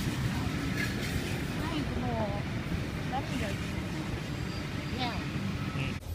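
A steady low rumble of outdoor background noise, with faint, indistinct voices over it a few times.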